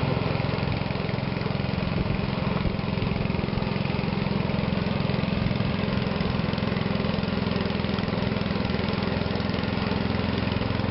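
A small engine running steadily at an even speed, with no change in pitch.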